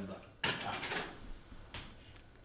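A short scraping slide about half a second in, fading over roughly half a second, with a fainter brief scrape near the end.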